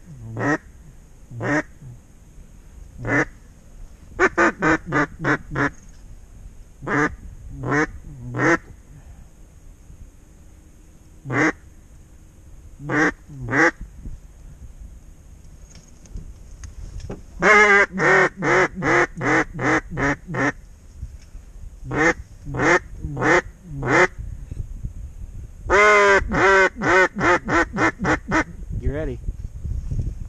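Hunter blowing a mallard duck call, imitating a hen mallard: single quacks and short runs of quacks, with two long, fast runs of calling about 17 and 26 seconds in. It is calling to mallards circling back over the decoys.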